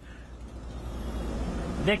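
Low rumbling background noise from an outdoor microphone, swelling steadily louder; a man's voice starts right at the end.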